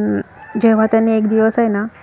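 A woman's voice in several short, drawn-out syllables held at a steady pitch.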